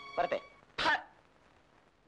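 A man clears his throat once, briefly, a little under a second in. A held music chord fades out just before.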